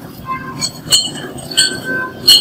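Sugarcane juice machine running with a steady low rumble while cane is fed through its rollers, with several sharp metallic clinks that ring briefly, about five in two seconds.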